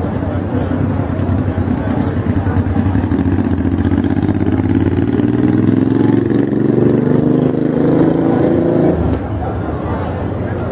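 A motor vehicle's engine accelerating along the street, its pitch climbing steadily for several seconds and then dropping off abruptly about nine seconds in.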